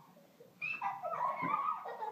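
A toddler's high-pitched wordless vocalising, starting about half a second in and wavering up and down in pitch.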